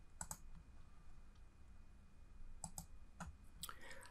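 Faint clicks of a computer mouse and keys. There is a pair of clicks about a third of a second in, then a few more short clicks in the last second and a half.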